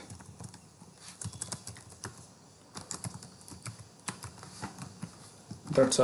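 Typing on a computer keyboard: irregular key clicks, with a short pause about two seconds in.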